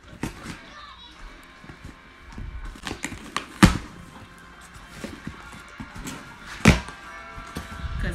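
Cardboard shipping box being opened by hand: scraping and rustling of the cardboard and packing tape, with two sharp knocks about three and a half and six and a half seconds in.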